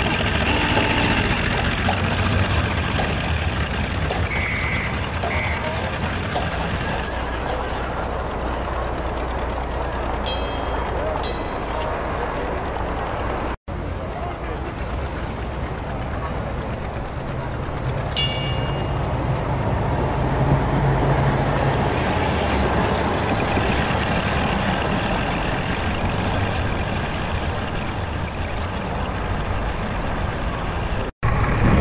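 Added city street ambience: a steady wash of traffic noise and crowd murmur. Short high toots come twice about a third of the way in and once more past the middle, and the sound drops out for an instant about halfway through.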